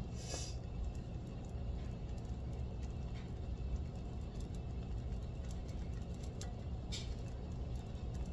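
Beaten eggs frying in oil in a cast iron skillet, a low steady sizzle. In the second half a spatula moves the eggs around, with a few faint scrapes against the pan.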